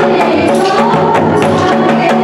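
Live Indian folk song: women singing into microphones over dholak barrel drums and keyboard, with a quick, steady beat of percussion strokes.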